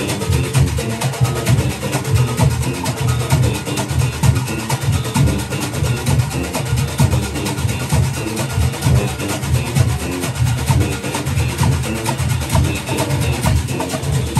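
A Junkanoo band playing: goatskin drums beating a fast, driving rhythm under brass horns, loud and continuous.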